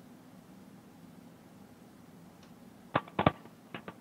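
Faint steady hum of an open video-call audio line, then a quick cluster of three sharp clicks about three seconds in and two softer ones just before the end: handling noise on a participant's microphone or earbuds.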